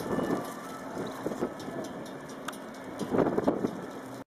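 Wind buffeting the camera microphone in irregular gusts over a steady outdoor hiss, the strongest gust near the end.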